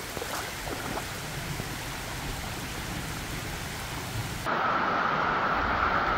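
Steady rain falling together with a swollen, muddy river rushing over rocks. About four and a half seconds in, the sound jumps abruptly louder and duller, a steady rushing.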